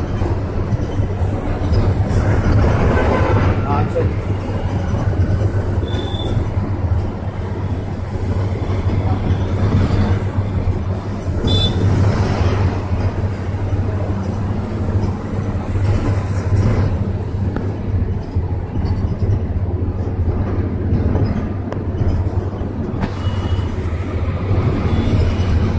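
Inside a moving bus: the engine's steady low drone with road noise from the tyres, heard through the cabin.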